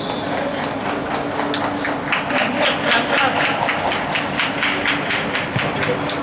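Hands clapping in a steady rhythm, about four claps a second, echoing in a sports hall.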